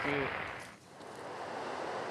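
Steady rain noise falling on an umbrella, which fades out just under a second in. It is followed by the even rush of a river in flood.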